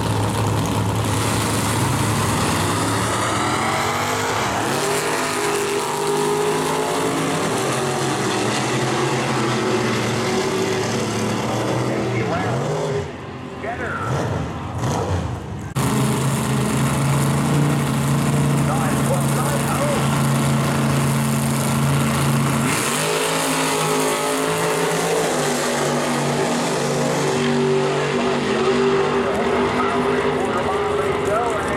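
Two drag-race launches by pairs of muscle cars. Engines hold steady revs on the line, then launch at full throttle about a second in, the engine note climbing in steps through the gear shifts as the cars pull away and fade. After a sudden cut, a second pair holds steady revs on the line and launches about seven seconds later, again climbing through the gears.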